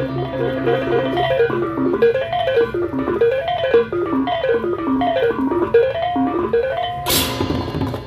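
Balinese baleganjur gamelan playing a quiet passage: small tuned bronze gongs run a melody that steps up and down again and again over a steady low gong hum. Near the end the whole ensemble comes back in with a loud clash of crash cymbals.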